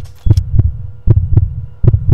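A heartbeat sound effect: low double thumps, lub-dub, in a steady rhythm of about three beats in two seconds, over a faint steady hum.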